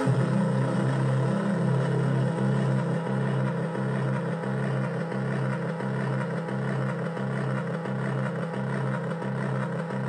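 Synthesizer jam on a Yamaha DJX keyboard with a Korg Monotron Delay: a low buzzing synth bass comes in at the start and holds, pulsing about twice a second, with higher synth tones over it.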